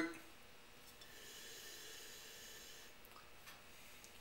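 Quiet room with a faint breathy hiss for about two seconds in the middle: a person breathing.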